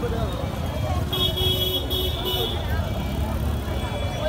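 Busy street ambience: a steady traffic rumble and a babble of voices from people around. About a second in, a shrill high-pitched tone sounds for about a second and a half, with a brief break partway through.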